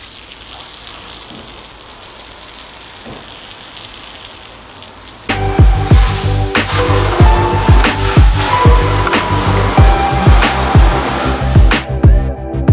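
Garden hose pistol nozzle spraying a steady jet of water against a rendered wall, washing muck off it, a continuous hiss. About five seconds in it gives way abruptly to background music with a steady beat.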